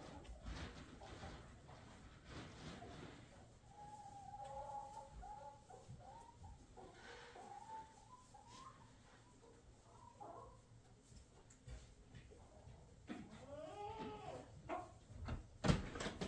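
A cat meowing faintly, several separate calls rising and falling in pitch, with a run of calls near the end.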